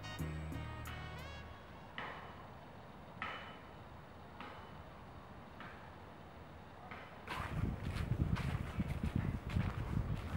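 Background music ends about a second in, leaving a quiet stretch with a few faint short chirps. About seven seconds in, footsteps start crunching through leaf litter, with irregular crackling and rustling.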